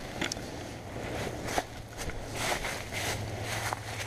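Rustling and soft crackling as a person moves about: a puffy jacket and nylon tarp fabric brushing, dry fallen leaves crunching underfoot, with a few light ticks.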